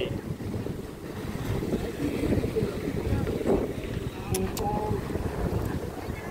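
Wind buffeting the microphone in a steady low rumble, with two brief sharp clicks close together about four and a half seconds in.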